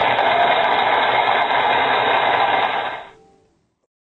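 Loud burst of static hiss, steady and even, fading out to silence about three seconds in.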